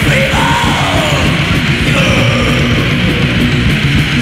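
A 1985 thrash metal demo recording: distorted electric guitars, bass and drums playing at full pace, loud and dense. A high line slides up and down in pitch above them.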